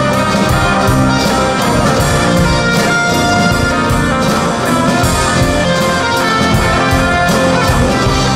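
Live rock band playing an instrumental passage: drums keeping a steady beat under guitars and electric bass, with a sustained keyboard lead melody on top.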